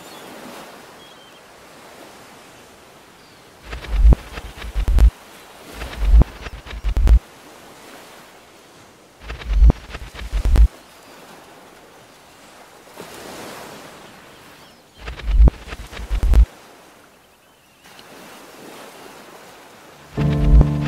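Sea ambience of waves and wind, with a steady wash of noise and several clusters of strong low rumbling gusts buffeting the microphone.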